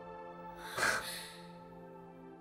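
Soft, sustained background music from an anime episode, held chords without a beat. About a second in comes one short breathy laugh through the nose.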